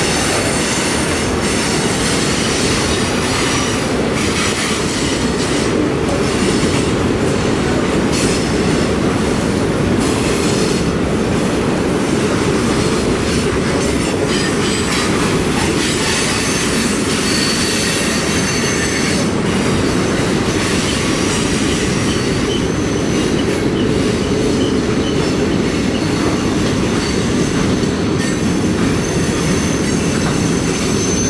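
Freight cars of a mixed freight train rolling past steadily on curving track: a continuous rumble of steel wheels on rail, with faint high wheel squeal coming and going.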